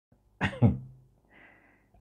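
A man's short cough in two quick bursts about half a second in, dying away within half a second.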